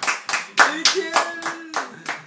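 Two people clapping their hands in steady applause, about four claps a second, with a voice sounding over the claps in the middle.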